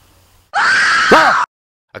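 A short, loud scream lasting about a second, starting and stopping abruptly, with its pitch rising and then falling.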